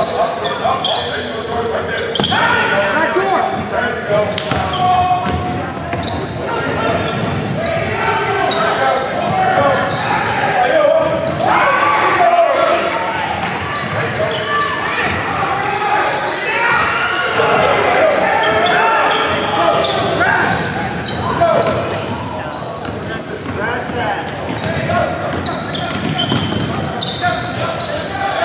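Basketball being dribbled and bounced on a hardwood gym floor, with indistinct voices of players and onlookers calling out, all echoing in a large hall.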